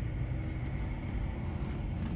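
Steady low engine hum heard inside a parked semi-truck's cab.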